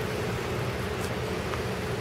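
A steady background hum and hiss with one faint, even tone and nothing else standing out.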